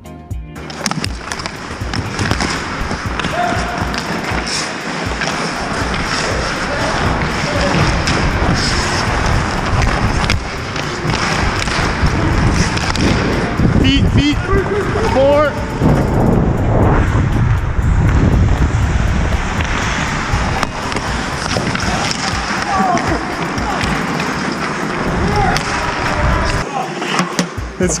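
Ice hockey in play heard from a skating player's helmet camera: skate blades cutting and scraping the ice, with rustle and wind on the microphone and brief shouts from players.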